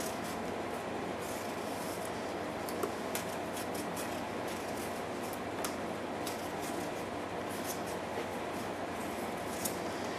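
Knife shaving the peel off a fresh cucumber by hand: a string of faint, short scraping clicks, irregular in spacing, over a steady room hum.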